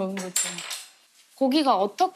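A short metallic clink of cutlery against a dish, ringing briefly about half a second in, with voices just before and after it.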